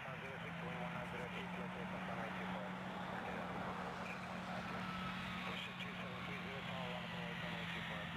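Air traffic control radio feed between transmissions: an even hiss with a steady low hum and faint, unclear voices.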